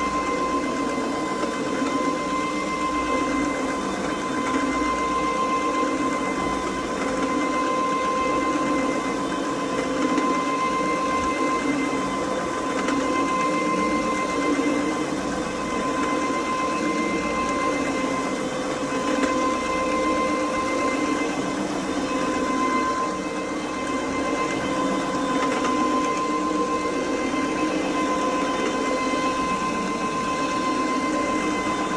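Renovator carpet brushing machine running steadily as it is pushed across carpet: an electric motor with a constant whine over the rumble of its brushes on the pile.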